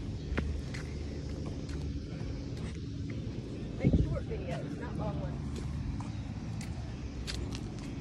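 A steady low rumble of street traffic, with scattered knocks and a short vocal sound about four seconds in.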